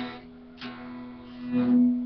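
Electric guitar, picked: a note at the start and another about half a second later, left unmuted so it rings on and swells near the end. This is part of an E minor riff.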